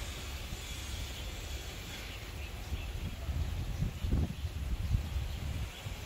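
Wind buffeting the microphone, a low uneven rumble, over faint outdoor background sound with a few soft, brief noises in the middle.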